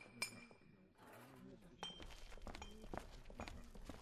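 Faint sound-effect ambience: a soft click near the start, then a low rumble with a few scattered light ticks and faint murmuring voices.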